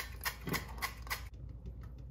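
Olive oil spritzer bottle spraying into a metal loaf pan: about five quick sprays, roughly a quarter second apart, in the first second, followed by fainter light clicks.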